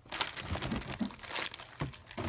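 Thin plastic shopping bags and cellophane craft packaging crinkling and rustling as they are handled, in irregular bursts with a few soft knocks.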